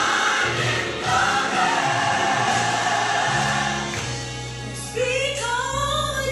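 Gospel music with a choir singing long held notes over a steady low accompaniment; about five seconds in, a voice sings a run of notes sliding up and down.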